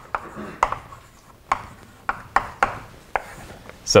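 Chalk writing on a blackboard: a string of sharp, unevenly spaced taps as the chalk strikes the board, with light scratching between them.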